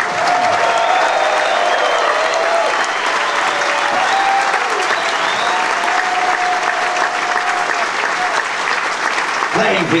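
Theatre audience applauding and cheering, dense clapping with a few long held shouts over it.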